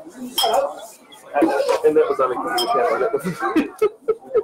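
People talking close by, with light clinks of tableware scattered through the talk.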